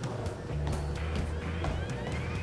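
Background music: a low, steady bass line with a held tone above it and a rising synth glide through the last second or so.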